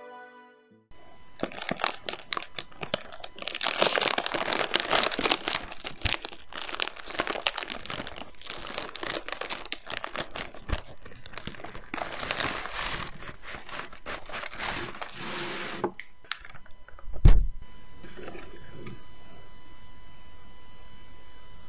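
Plastic Oreo cookie wrapper being torn open and crinkled by hand, a dense crackly rustle for about fifteen seconds. The rustling then stops, leaving a steady whine of several high tones, and one loud thump follows a little later.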